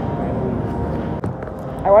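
Steady background din of a fast-food restaurant, mostly a low rumble, with a sharp click just past a second in. A woman starts speaking near the end.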